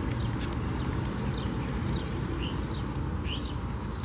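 Spray bottle of car spray detailer misted onto a car hood in a series of quick hissing spritzes, with a few bird chirps behind.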